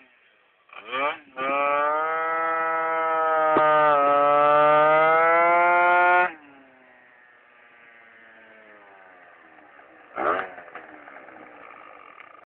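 Yamaha Aerox scooter engine revved in two short blips, then held at high revs for about five seconds with its pitch climbing as it accelerates. The note cuts off sharply when the throttle is closed, falls in pitch, and carries on faintly, with one more brief rev near the end.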